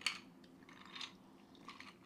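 Faint sipping from a glass of a mixed drink on ice: two short sips about a second apart, with a few small clicks near the end.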